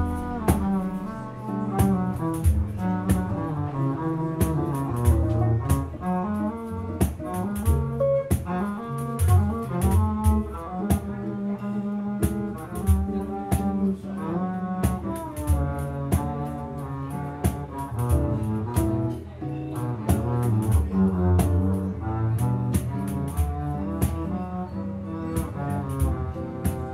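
Upright double bass played with the bow, carrying a melodic line in a live jazz group, with acoustic guitar and pandeiro taps and jingle clicks behind it.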